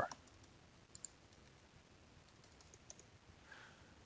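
Near silence with a few faint clicks of typing on a computer keyboard, two close together about a second in and a few more near the end.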